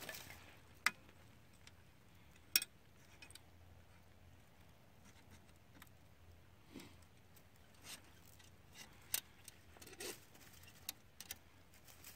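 A few sharp metal clicks and clinks from a 330 body-grip beaver trap being set by hand, the loudest about a second in and again a couple of seconds later, with fainter ticks near the end.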